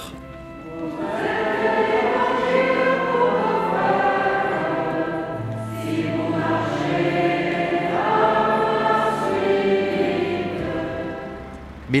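Church congregation singing a hymn together in slow, long-held notes. The singing swells in about a second in and dies away just before the end.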